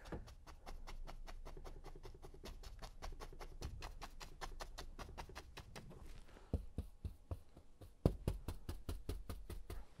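A stiff two-inch brush loaded with thick dark oil paint tapping against a stretched canvas, a quick, soft run of taps, several a second, with a few duller thumps from the canvas. It is the tap-and-turn stroke that lays in hanging evergreen foliage.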